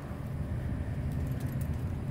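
Steady low rumble of vehicle engines and traffic.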